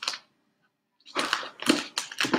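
Fingers rubbing and pressing sticky vinyl transfer paper down onto a clear plastic box lid: a short scratch, a pause, then from about a second in a run of scratchy, crinkly rubbing.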